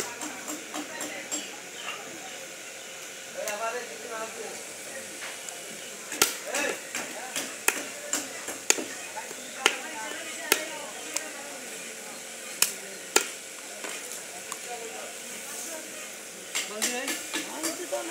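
Heavy knife blade chopping catfish on a round wooden chopping block: sharp single chops at irregular intervals, thickest in the middle and again near the end, with voices talking behind.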